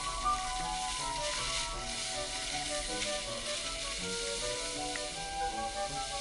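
Background music with a melody of short notes, over a steady hiss of skis sliding on snow.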